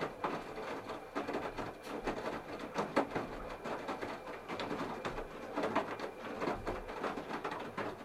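Candy RapidO front-loading washing machine in its wash phase: the drum turning wet laundry, with water sloshing and clothes falling in an irregular run of splashes and soft knocks.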